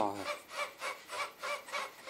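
A fast, even rasping rhythm, about five scrapes a second, running as the backing track under the voice-over.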